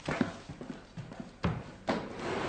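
A series of sharp knocks, uneven and about two a second, the loudest one near the end.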